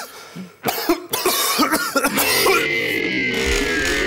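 Several harsh coughs from tobacco smoke in the first half. About halfway through, music starts, with tones sliding downward.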